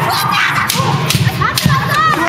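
Bamboo kendo shinai striking several times in sharp, quick clacks, with the fighters' shouts and a crowd around them.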